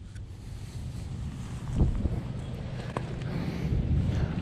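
Wind buffeting a GoPro's microphone: an uneven low rumble throughout, with a soft bump a little under two seconds in.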